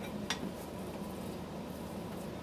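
Quiet kitchen handling: a single light click of a utensil or dish about a third of a second in, over a steady low background hum.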